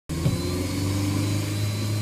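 A Skoda car's engine running, heard from inside the cabin as a steady low hum.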